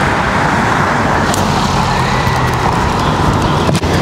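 Street traffic noise: a motor vehicle's engine running close by, a steady low hum over road noise that holds at a constant level.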